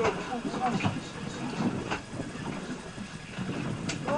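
Steady low rumble of the fishing boat's outboard motors running at idle, with short bits of voice in the first second and a sharp click just before the end.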